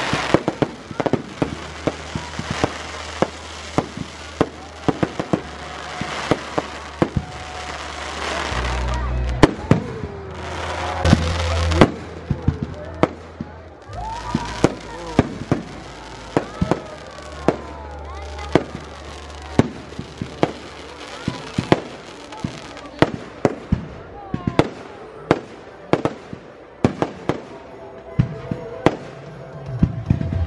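Fireworks display: an irregular run of sharp bangs from bursting aerial shells, with crackling between them. A denser, louder stretch of crackle comes about eight to twelve seconds in.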